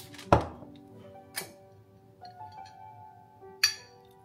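Kitchen clatter over soft background music: a loud clunk with a short ring about a third of a second in, then two sharper clicks, one about a second and a half in and one near the end.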